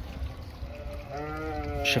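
A sheep bleating: one held bleat of about a second, starting about a second in, over a low background rumble.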